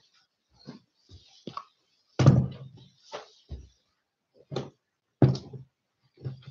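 Handling noise from a camera being picked up and moved: a string of irregular bumps and knocks, the loudest a little over two seconds in and another near the end.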